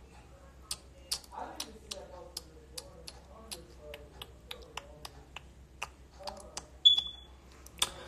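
A run of irregular sharp clicks and ticks, about two or three a second, over a faint voice in the background, with one short high beep about seven seconds in.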